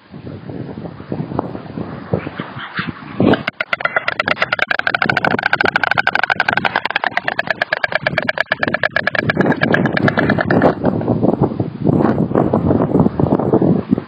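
White storks bill-clattering: a rapid rattle of clicks that starts a few seconds in and lasts about seven seconds. This is the storks' greeting display as a mate arrives on the nest. Wind noise and rustling come before and after it.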